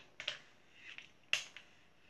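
A few faint clicks and rustles as a Conair Pro flat iron is clamped on hair and slid through it, the sharpest click about a second and a half in.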